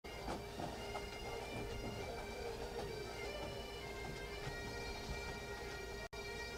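Pipe band playing on the march: Highland bagpipes sounding a steady drone under the chanter's tune.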